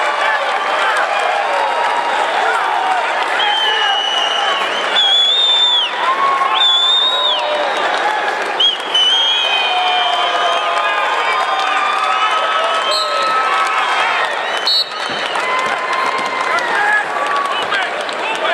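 Spectators shouting and cheering at a wrestling match, with applause. Many voices overlap throughout, and a few high, drawn-out calls stand out a few seconds in.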